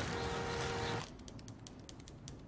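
A steady outdoor hiss with a faint held tone, cut off about a second in. A run of quick, light, irregular clicks follows in a quiet room, several a second.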